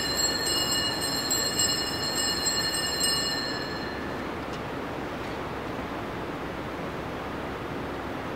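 Altar bells (sanctus bells), a cluster of small bells shaken repeatedly with a bright, high ringing that fades out about four seconds in, marking the elevation of the host at the consecration. After that only a steady hiss of room tone remains.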